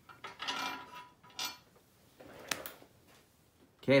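A gasket being peeled off an aluminium intake manifold by hand: a short rustling scrape, then two light, sharp clicks.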